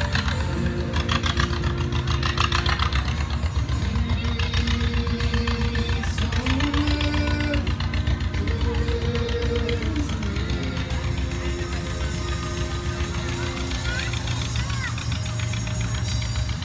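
A live band playing amplified on an open float: strummed acoustic guitar, electric guitars and a drum kit in a steady rhythm, over a continuous low rumble.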